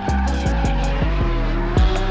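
Music with a deep bass beat and fast hi-hat ticks, with a drifting car's engine and squealing tyres underneath.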